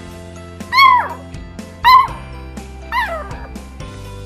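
Beagle puppy barking three times, about a second apart: short, high barks that drop in pitch at the end, the last one weaker. These are the puppy's first barks.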